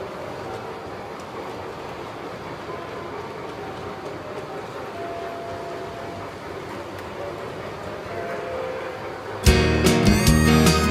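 Model train running on layout track: a steady, fairly quiet running noise mixed with room sound. Loud background music cuts in suddenly near the end.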